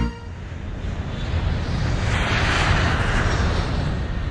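City street traffic noise, a steady hiss of passing vehicles that grows louder over the first couple of seconds.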